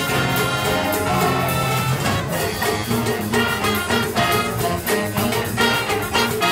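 School big band playing a swing-style jazz number, with the brass section prominent and drums and cymbals beneath.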